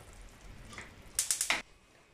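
Faint simmering of a pot of stew on a gas stove, with a quick run of four or five sharp clicks about a second and a half in.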